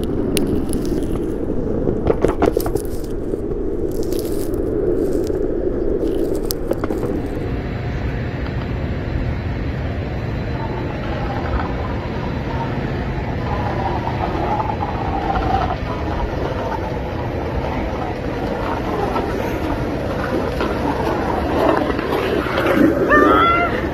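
Skateboard wheels rolling over concrete with a steady rumble, broken by a few sharp clicks and knocks in the first several seconds. After about seven seconds it changes to a duller, steadier low rumble.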